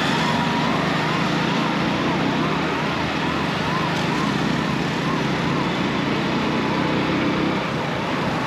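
Steady wind and engine noise from a motorcycle riding along a city road, with a siren in the traffic rising and falling about twice a second, stopping near the end.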